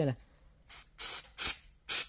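Aerosol foot-deodorant spray can sprayed in about four short hissing bursts, the middle ones loudest; a very strong spray of gas.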